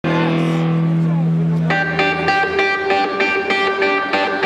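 Hard rock band playing live, led by distorted electric guitar: a held note rings for about a second and a half, then a fast, driving riff kicks in.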